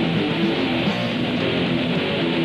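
Rock band playing an instrumental passage without vocals, led by fast electric guitar riffing over bass, steady and loud throughout.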